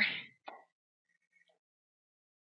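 Near silence: the speaker's last word trails off at the very start, with one faint short sound about half a second in, then dead quiet.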